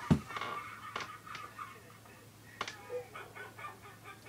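Laughter playing from a video, a man's unusual high, choppy laugh in short bursts, with a thump at the very start.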